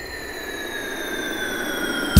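Synthesizer sweep effect in the break of a Greek tsifteteli pop song: a noisy whoosh carrying a high tone that slowly falls in pitch, swelling louder.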